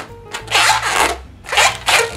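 Latex 260 modelling balloons squeaking and rubbing against each other as two lengths are twisted together, in two bursts: one about half a second in and a shorter one near the end.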